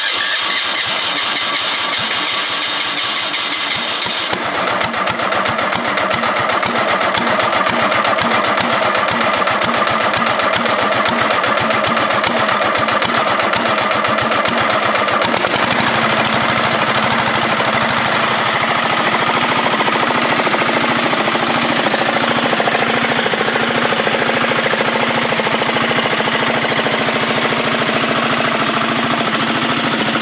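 Small air-cooled diesel engine cranked on its electric starter, catching about four seconds in and then running with a rhythmic diesel knock. Around halfway through, a steadier, lower note comes in as the throttle is worked.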